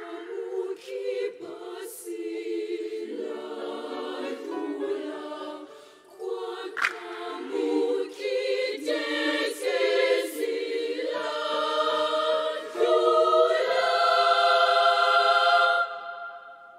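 Children's mixed choir singing an African choral song in several voice parts. There is a brief break about six seconds in, and the choir grows loud on a held chord near the end.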